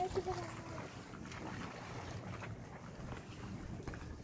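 Steady low wind rumble on the microphone over calm open water, with a few faint knocks. A short voice sound comes at the very start.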